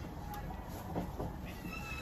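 Richardson's ground squirrel, held in gloved hands, giving a short, thin, slightly falling squeak near the end, over low rustling of handling.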